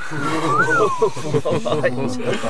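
Overlapping laughter from several voices, with one high voice sliding up and then down near the start.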